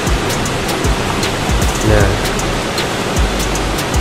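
Steady hiss of heavy rain, with scattered faint clicks.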